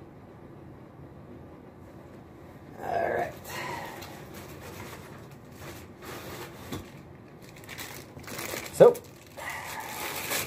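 Plastic packaging rustling and crinkling, with light knocks, as a laptop power cord is taken out of its bag. The handling starts about three seconds in, and there is one brief sharp sound near the end.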